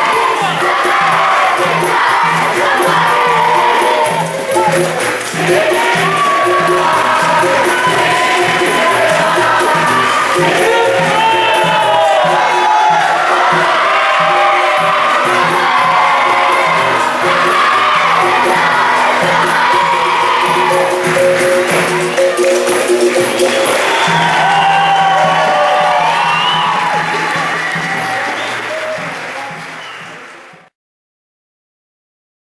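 Capoeira song: a crowd of children and adults singing together and clapping over steady hand percussion. It fades out over the last few seconds.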